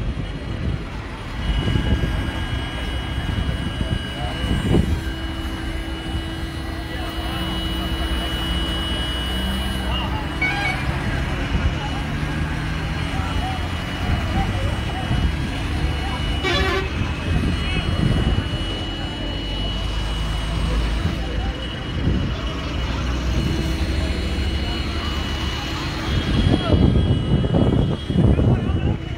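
Roadside traffic noise: heavy vehicles running, with vehicle horns tooting and the voices of people nearby.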